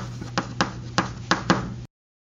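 A quick, slightly uneven series of sharp taps or clicks over a steady low hum, cutting off suddenly near the end.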